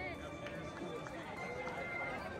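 Footsteps of many runners on a cobblestone street, mixed with the chatter of spectators' voices.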